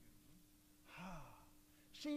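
Near silence with a faint steady hum, broken about a second in by one brief, faint human vocal sound with a falling pitch, like a sigh.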